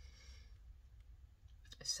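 Faint handling of a small stack of paper die-cut stickers, a soft rustle in the first half second, over a low steady room hum. A woman's voice starts right at the end.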